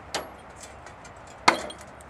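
Two sharp clicks at the metal stove and chimney of a wood-fired Stirling engine, about a second and a half apart, the second louder and ringing briefly, with faint ticking in between.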